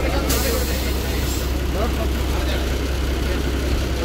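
Diesel engine of a KSRTC bus running with a steady low drone, heard from inside the driver's cab, with voices in the background.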